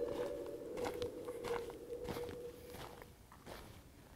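Footsteps on dry, gravelly desert ground, a run of light irregular steps that grow fainter toward the end. A held music tone dies away under them in the first few seconds.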